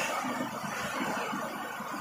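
Heavy rain falling steadily, an even hiss without a clear rhythm.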